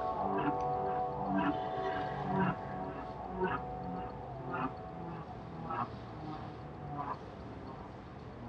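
A pop song playing, with sustained chords over a steady beat of about one accent a second, gradually fading out.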